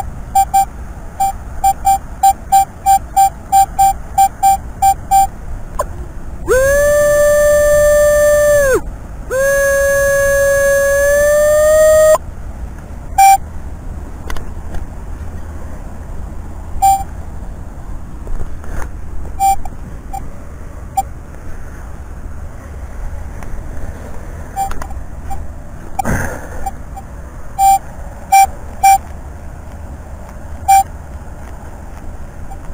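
Metal detector beeps: a quick run of short, evenly spaced beeps, about three a second, then two long steady tones of two to three seconds each, the second rising a little in pitch at its end, then scattered single beeps. A dull thud about 26 seconds in.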